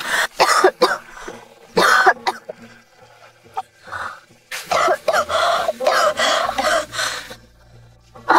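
A person coughing hard in repeated fits, with short bouts early on and a longer spell in the second half.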